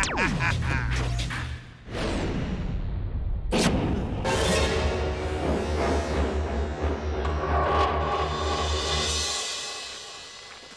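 Dramatic cartoon score with sound effects: a falling swoop near the start, a sharp hit about three and a half seconds in, then a low pulsing throb under the music that fades out near the end.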